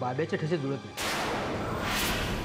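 A man's voice speaks briefly, then about a second in a sudden loud rushing noise starts and holds: a dramatic sound-effect hit of the kind laid over a reaction shot in a TV serial.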